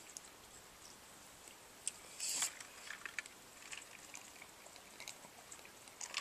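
Faint, mostly quiet room tone with a few soft mouth or handling clicks and one short hissing breath about two seconds in.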